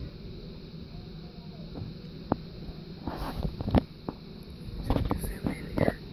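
Quiet background with faint voices of people in the distance and a few short sharp clicks.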